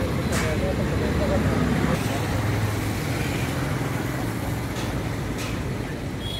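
Steady road traffic noise with indistinct voices in the background.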